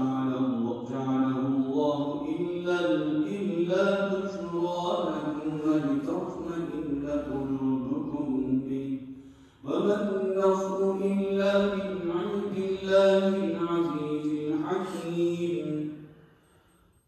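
A man reciting the Quran in Arabic in a melodic chant, holding two long phrases with a short breath between them about nine and a half seconds in.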